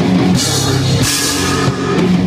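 Loud heavy rock music with a drum kit and crashing cymbals over a sustained low pitched line.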